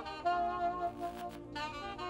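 Solo saxophone playing a slow melody of held notes, with a short break in the line about a second in.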